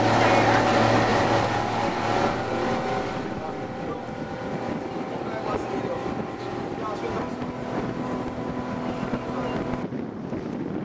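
Small boat's outboard motor running steadily, with rushing water and wind on the microphone. It gets noticeably quieter about three seconds in.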